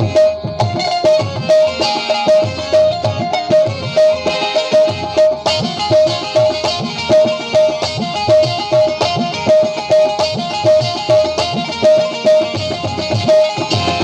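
Instrumental passage of live Sindhi folk music: a benju (keyed zither) plucks a bright note over and over, about twice a second, over a steady hand-drum rhythm and harmonium.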